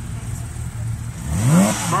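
Porsche 997 GT3 RS 4.0's flat-six engine running low while moving off, then revving up sharply about a second and a half in and dropping back.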